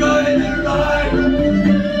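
A fiddle playing a folk tune, with a man's wordless vocals sung into a microphone over it.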